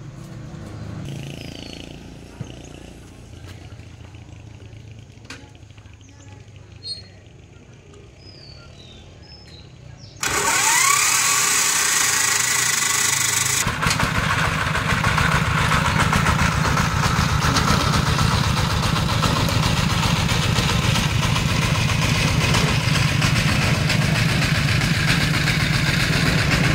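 Single-cylinder diesel engine of a two-wheel công nông tractor being started. After about ten seconds of quiet background with a few faint clicks, a rising whirr comes in suddenly. A few seconds later the engine catches and runs steadily, with an even low chugging to the end.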